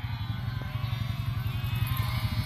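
A vehicle engine idling steadily, a low even rumble with a fast regular pulse.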